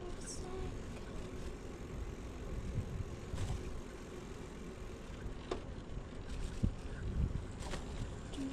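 Steady low rumble and wind noise from a YouBike rental bicycle rolling along a paved path, with a few scattered clicks and rattles from the bike.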